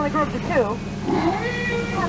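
Animatronic elephants trumpeting and squealing on the Jungle Cruise's bathing-elephant scene: a sharp falling call about half a second in, then a held high note, over the tour boat's steady motor hum.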